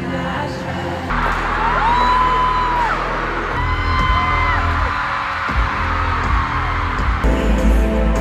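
Live stadium pop concert heard through phone recordings that cut abruptly a few times: amplified music and singing with a crowd whooping and screaming along, including long held high notes.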